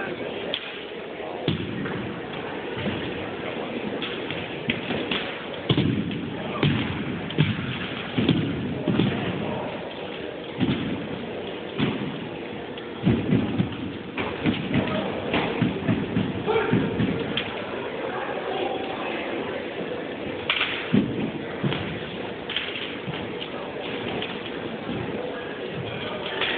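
Armed drill platoon working drill rifles in a gymnasium: a long run of sharp, irregular thuds and slaps as rifle butts, hands and heels strike the rifles and the wooden floor.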